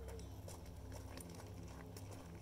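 Faint, irregular crunching and clicking of footsteps and a small bicycle being pushed along a gravelly dirt path.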